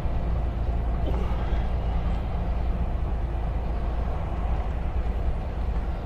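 Heavy double-trailer truck's diesel engine running steadily under load on an uphill climb: a deep, even rumble with road noise.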